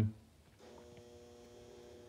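A faint, steady hum of several held tones, starting about half a second in.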